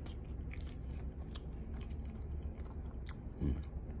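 Close-up chewing of a mouthful of warm custard egg tart, with many small wet mouth clicks. A short hum of the voice comes about three and a half seconds in.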